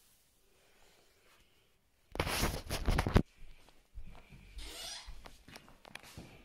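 Fabric rustling and rubbing, as of bedding and clothes being moved: a loud burst of about a second a couple of seconds in, then softer, scattered rustles and light knocks.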